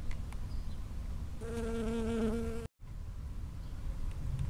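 Honeybee buzzing in flight close to the microphone: a steady hum that starts about a second and a half in and lasts just over a second, then cuts off abruptly. Under it is a low rumble.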